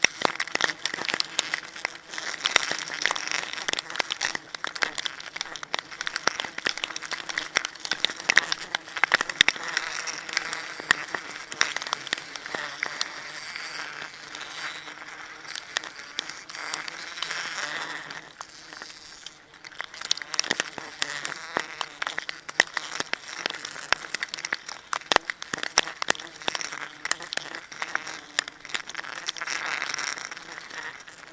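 Continuous crinkling, crackling rustle, thick with small clicks, briefly easing off about two-thirds of the way through: a plastic sack and clothing rubbing close to the microphone as the climber moves about in the tree.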